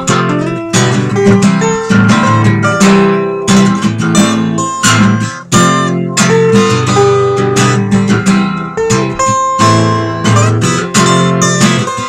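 Acoustic guitar strumming chords in an instrumental passage of a song, with no singing.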